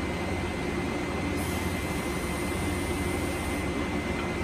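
Steady hum and fan-like noise of running lab equipment, with a faint, constant high whine.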